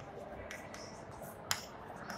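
Chalk on a blackboard as a line is written: light taps and scratches of the chalk strokes, with a sharp click about a second and a half in.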